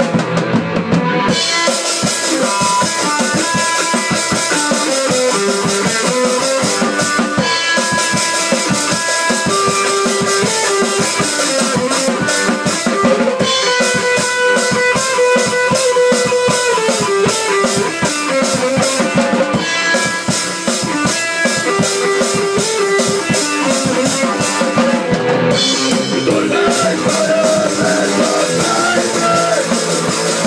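A rock band playing live, with a drum kit keeping a steady beat under guitar.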